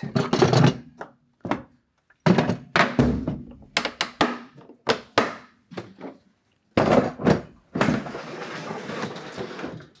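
Milwaukee Packout hard plastic tool boxes being shut and restacked: a run of sharp knocks and thunks. Near the end comes a rough scraping slide as a box is pushed into place.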